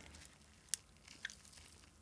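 Soy-marinated raw crab leg squeezed between gloved fingers to press the meat out onto rice: a faint sound with two small clicks of shell around the one-second mark.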